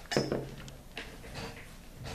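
A few faint, light clicks and handling sounds as a hand holds a ceramic skull pressed down onto a plastic board, its hot-glue bead setting.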